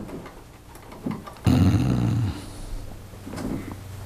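A man's low, drawn-out "hmm" through closed lips while thinking, about a second and a half in, lasting under a second.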